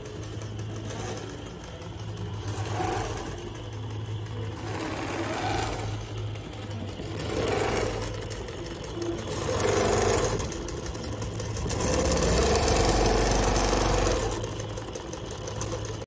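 Longarm quilting machine running and stitching: a steady low hum with a higher whir that swells and eases about every two to three seconds, loudest near the end.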